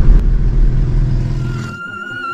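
Car driving, heard from inside the cabin: a steady low engine and road rumble that fades out near the end as music comes in.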